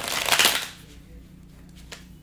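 A deck of tarot cards being shuffled in the hands: one brief flutter of cards lasting under a second, then a single small click near the end.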